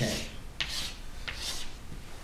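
Chalk scraping on a chalkboard as lines and letters are written, with a couple of sharp taps of the chalk against the board.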